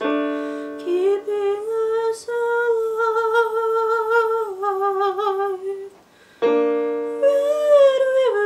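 A woman singing slow, long-held notes with vibrato over sustained piano chords played on a digital keyboard. After a brief lull near six seconds, a fresh chord is struck and the voice comes back in.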